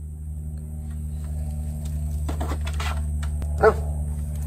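A dog gives a single short bark near the end, over a steady low hum, with some light rustling just before it.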